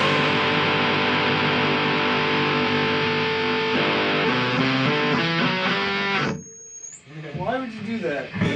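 Distorted electric guitar ringing out through its amplifier after the band's final chord. It sustains, with a few notes shifting, then cuts off suddenly about six seconds in.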